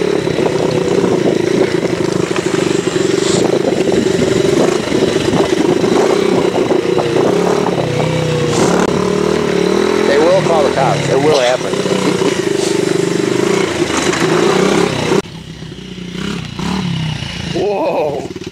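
Yamaha TTR-90 dirt bike's small single-cylinder four-stroke engine running steadily at a fairly constant speed. About fifteen seconds in it suddenly drops to a much quieter running sound.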